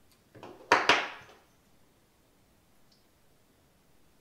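Metal hand tool put down on a wooden workbench: two quick knocks less than a second in, after a short soft rustle, ringing out briefly.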